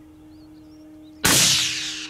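A single rifle shot from a Sauer 100 in .30-06: one sudden, very loud crack about a second and a quarter in, dying away over the next half second.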